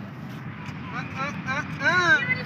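Outdoor city ambience: a steady low hum of distant traffic. Over it come short, faint calls from distant voices, the loudest just before the end.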